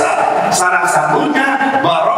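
Only speech: a man talking into a handheld microphone.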